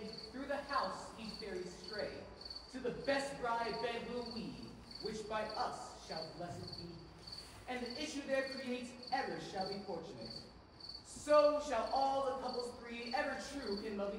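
Crickets chirping steadily, a high chirp repeating a few times a second, as a stage night-time sound effect. Performers' voices rise over it in drawn-out phrases.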